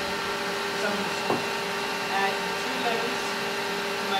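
Electric stand mixer motor running at a steady speed, beating butter and sugar in its steel bowl.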